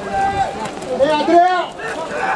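A man's voice calling out twice in quick succession, close to the microphone, over faint outdoor ambience.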